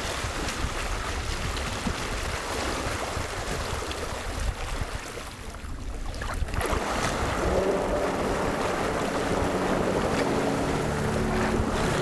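Water splashing and wind noise as an amphibious electric vehicle drives from the shore into a lake and swims out. The sound briefly drops quieter just before the middle. From about seven seconds in, a steady hum of several low tones runs under the water noise.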